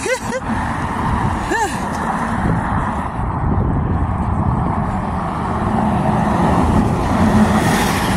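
Road traffic on the bridge: passing cars with a steady rush of tyre and engine noise, growing a little louder near the end as another vehicle approaches.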